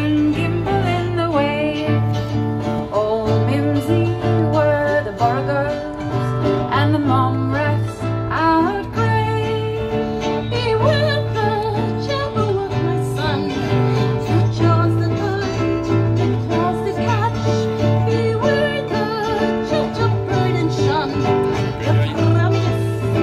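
Live acoustic folk song: a steel-string acoustic guitar and a ukulele strummed together, with a woman singing the melody over them.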